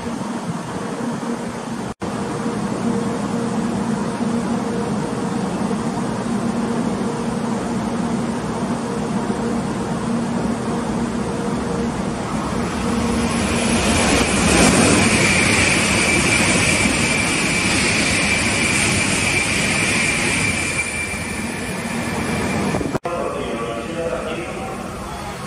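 Shinkansen bullet train passing through a station at high speed. A steady rumble builds as it approaches, then about halfway through comes a loud rush of air and wheel noise with a steady high whine for several seconds as the train goes by, easing off near the end.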